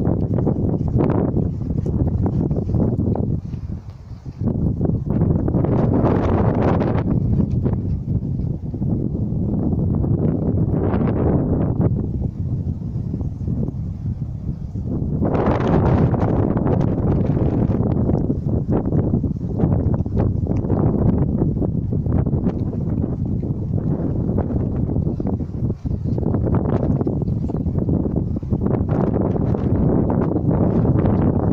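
Wind buffeting a phone's microphone, loud and gusting, rising and falling, with a brief lull about four seconds in.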